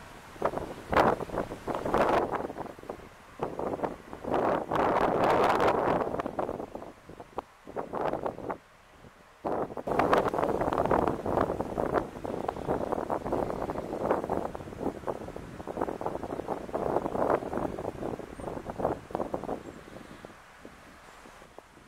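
Wind buffeting the microphone in irregular, loud gusts, with short lulls about halfway through.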